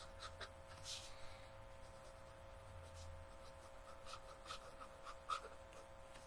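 Faint scratching of a broad fountain pen nib (Aurora Optima) writing on paper in short strokes, with a slightly sharper tick a little after five seconds. A faint steady hum lies underneath.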